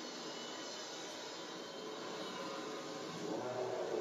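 Steady rushing noise from an animated film's soundtrack played over speakers, with faint music underneath and a rising tone coming in near the end.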